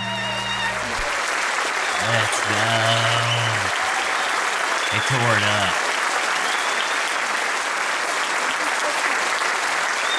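The band's final held note dies away in the first second, then a concert audience applauds steadily, with a couple of shouted calls over the clapping.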